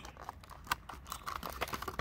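Clear plastic blister packaging of a diecast toy car clicking and crackling as the car and its plastic tray are pried out by hand: a run of small irregular clicks, with one louder click about two-thirds of a second in.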